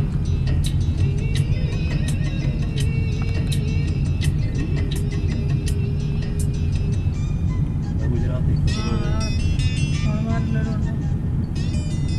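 Steady low rumble of a moving vehicle with music playing over it: a regular beat and melody in the first half, then a singing voice from about eight seconds in.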